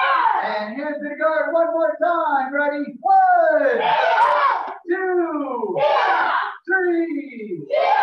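Martial arts students shouting as they kick: several drawn-out yells, about a second each, falling in pitch.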